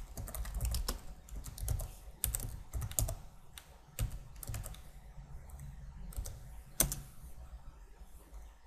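Typing on a computer keyboard: a quick run of keystrokes for about three seconds, then a couple of single clicks, the sharpest about seven seconds in.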